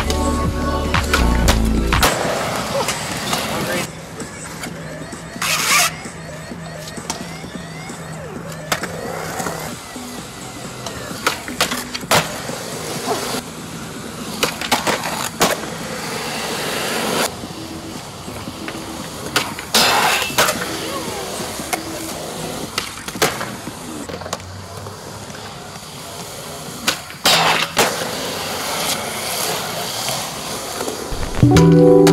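Skateboard wheels rolling on concrete, broken by a series of sharp board pops, landings and slaps spread a few seconds apart. Music is heard for the first couple of seconds.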